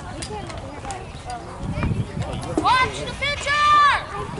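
A high-pitched voice shouting: a short rising yell about two and a half seconds in, then a louder, longer drawn-out shout near the end, over low background chatter.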